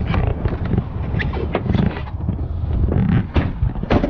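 Handling noise of a handheld camera being carried out of a pickup's cab: a busy run of knocks, bumps and rubbing over a low rumble.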